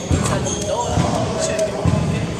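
Indistinct chatter of several people in a reverberant gymnasium, with repeated thuds on the hardwood floor.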